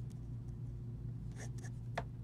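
Pen writing on paper: faint scratchy strokes, with a few quick ones near the end as the word is struck through, over a steady low hum.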